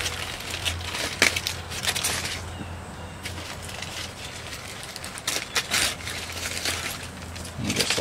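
Aluminium foil crinkling and crackling in bursts as a foil collar is peeled and crumpled away from a bonsai's root base, busiest in the first couple of seconds and again about five seconds in, with a low steady hum underneath.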